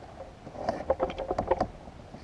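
Fishing reel being cranked against a hooked fish: a quick run of short clicks from about half a second in, stopping near the end.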